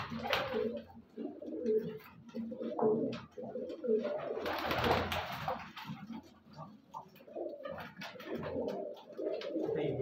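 A loft full of teddy pigeons cooing over and over in a small room, with a short rush of wing flapping about halfway through.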